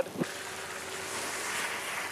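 A car sliding on a wet skid pan some way off: a steady hiss of water spray and tyres on wet tarmac, with a faint steady engine note underneath.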